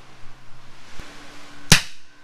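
A hand-held rifle firing one sharp shot about three-quarters of the way in, preceded by a small click about halfway through.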